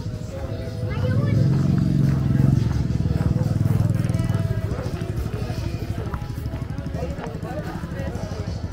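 A motorbike engine close by, swelling for a few seconds from about a second in and then fading, over the voices of people talking around it.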